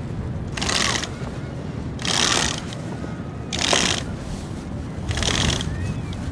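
Rope halyard running through pulley blocks as a heavy gaff mainsail is hauled up hand over hand on a 3-to-1 purchase. There are four pulls, one about every one and a half seconds, each a short rasp of line through the sheaves.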